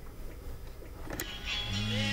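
A bedside alarm clock radio goes off: one sharp click a little over a second in, then music starts playing.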